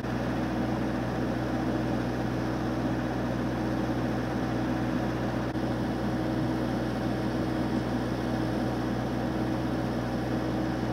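Steady low mechanical hum with a constant pitched drone and no change in level.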